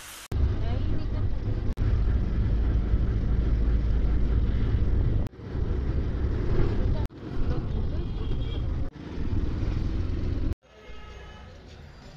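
Heavy wind rumble on the microphone mixed with vehicle noise while riding along a street, chopped by several abrupt cuts. It drops to a much quieter background about ten and a half seconds in.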